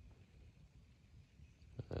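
Very quiet background: a faint, steady low rumble with no distinct sound, and a brief start of a man's voice near the end.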